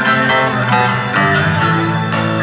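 Heavy metal band playing live in an arena: electric guitars play a melodic line of changing notes over held bass notes.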